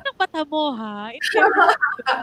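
A woman's voice into a close microphone: a few quick syllables, then one long drawn-out vocal sound that dips in pitch and rises again, then rapid speech.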